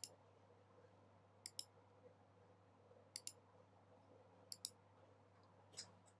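Faint clicks of a computer mouse button, five in all, each mostly a quick double tick of press and release, about one every second and a half. A faint steady low hum lies underneath.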